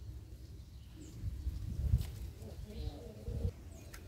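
A bird's faint low call, about three seconds in, over soft low bumps and rustling from the phone being carried through the garden plants.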